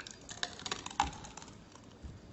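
Thick blended sludge of dog food and molasses sliding out of a blender jar into a plastic cup, a quick run of small wet clicks and plops, the loudest about a second in.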